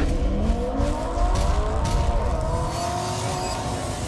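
Car engine revving, its pitch climbing and then holding, with a few sharp clicks partway through.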